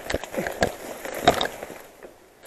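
Mountain bike rattling and knocking over rough ground on an overgrown trail, with a few sharp clatters and leaves and grass brushing past.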